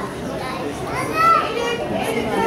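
Young children's voices chattering and calling out over one another, with one child's loud, high call just over a second in.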